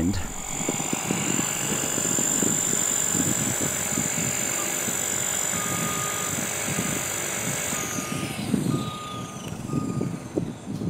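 EXI 450 electric RC helicopter's motor and rotor whining steadily in low flight, the high whine falling in pitch about eight seconds in as it lands and the rotor spools down. A series of short, evenly pitched electronic beeps sounds from about six seconds on.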